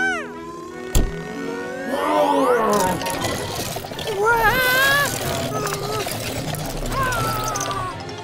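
Cartoon action music with sound effects: a sharp crack about a second in, then a long rising glide as a character stretches, and high-pitched wordless vocal sounds from a cartoon character in the middle and near the end.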